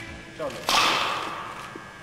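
A single sudden splat of liquid dashed onto a hard floor, about two-thirds of a second in: a sharp hit followed by a spraying hiss that dies away over about a second.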